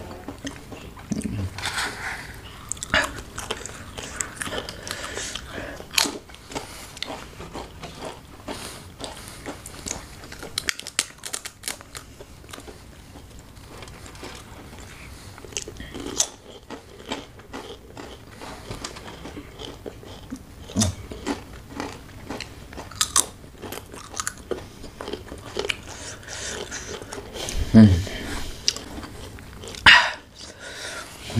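Close-up crunching and chewing of thin, crisp ghost pepper chips: many small crackles and bites throughout, with a few short hums from the eaters.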